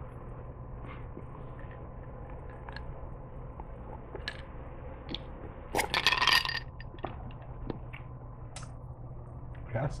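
A loud slurping sip of iced soda from a glass, lasting about half a second, about six seconds in, with faint scattered clicks and mouth sounds around it.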